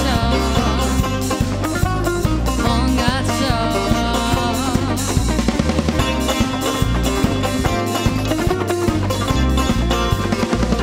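Live band playing an upbeat instrumental: an Azerbaijani tar plucks a fast, ornamented melody over a drum kit keeping a steady snare-and-cymbal beat, with a bass line underneath.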